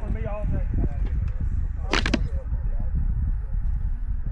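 Low rumbling handling noise as a scoped rifle is shifted and settled onto a rubber tire barricade, with a short sharp noise about two seconds in. Voices are heard in the first half second and briefly near the sharp noise.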